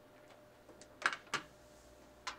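Light plastic clicks and knocks as a small puzzle tray of coloured plastic pieces is handled and set down on a desktop, with two sharper clicks about a second in.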